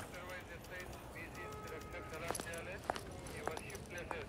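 Faint background murmur of voices in a room, with a brief steady high tone near the middle and a few sharp knocks in the second half.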